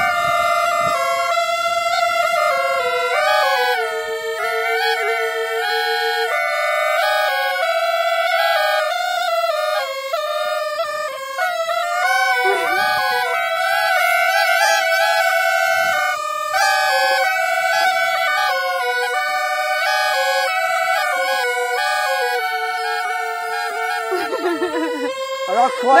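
Two small Qiang bamboo reed pipes played together in a melody of long held notes, one line sounding a little below the other. The sound is made by a vibrating piece set in the blocked-off pipe.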